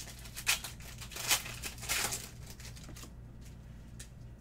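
Foil wrapper of a Panini Select basketball card pack being torn open and crinkled: a few sharp rips in the first two seconds, the loudest about a second and a half in, then quieter rustling that dies away.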